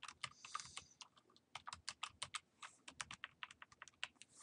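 Faint typing on a computer keyboard: a quick, irregular run of key presses, several a second, with a brief pause about a second in.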